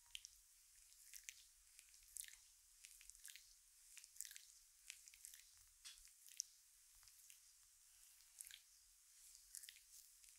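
Faint, wet squelching and sticky crackles of oiled hands and thumbs kneading bare skin at the neck and shoulders, coming irregularly, several a second.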